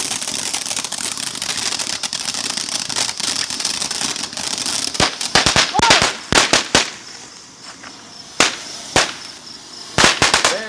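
Ground fountain firework hissing steadily as it sprays sparks. About five seconds in, it breaks into a rapid string of sharp cracking bangs, followed by a couple of separate bangs near the end.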